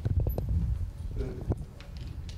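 Handling noise from a handheld microphone: a quick run of knocks and low thuds at the start and one more sharp knock about a second and a half in.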